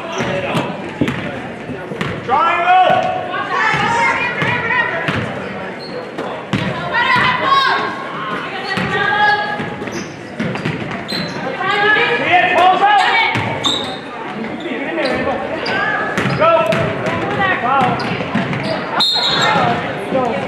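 Basketball bouncing on a hardwood gym floor during play, with players and spectators shouting, echoing in a large gym. A short, shrill referee's whistle sounds about a second before the end.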